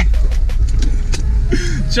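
Steady low road and engine rumble inside the cabin of a moving Hyundai Genesis Coupe, with a few sharp clicks and a brief laugh near the end.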